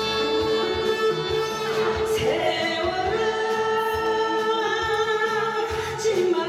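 A woman singing live into a microphone over an instrumental backing track, holding long, steady notes that step up in pitch about two seconds in.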